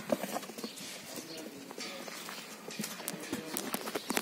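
Sardi sheep's hooves stepping and shuffling on a hard pen floor: irregular sharp knocks and clicks, coming thicker in the last second or so.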